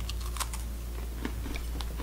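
A few scattered light clicks and taps from hands handling MRE packets and a spoon on a table, over a low steady hum.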